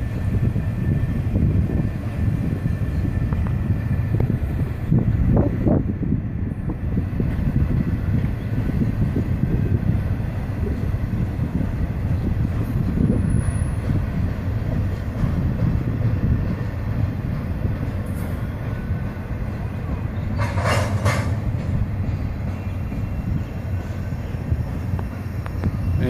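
Freight train's empty bulkhead flatcars rolling past below, a steady low rumble of steel wheels on rail. A brief hiss comes about four-fifths of the way through.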